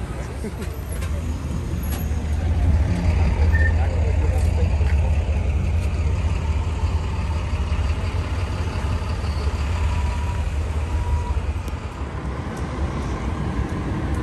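Steady low rumble of street traffic and running vehicles, growing louder about two seconds in.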